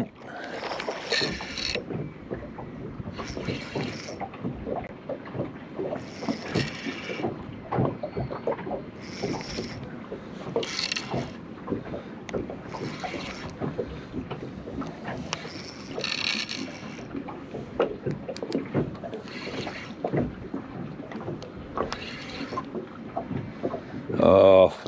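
Spinning reel being wound in short bursts every couple of seconds, each a brief whir of the reel's gears, as a lure is worked back in. Under it runs a steady wash of water with small clicks and rustles.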